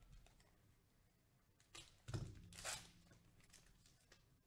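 A foil trading-card pack wrapper torn open by hand: a few short crinkling rips about halfway through, otherwise faint.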